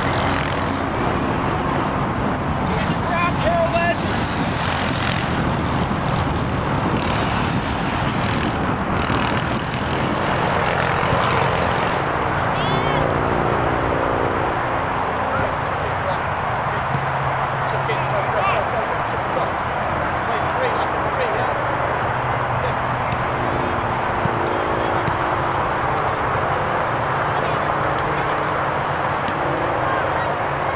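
Steady outdoor background noise at a soccer field, with faint distant voices of players and spectators. A low hum joins about twelve seconds in.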